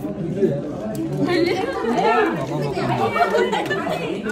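A crowd of people talking over one another: overlapping chatter in a large room, busier from about a second in.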